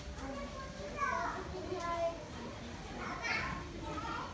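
Children's voices and other people talking in the background, with no clear words, loudest at about one second in and again just after three seconds.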